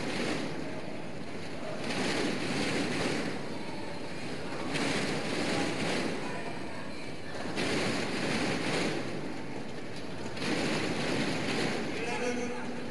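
Large indoor arena crowd cheering and beating inflatable thundersticks. The noise swells and falls in a rhythm about every three seconds, like a home-crowd chant.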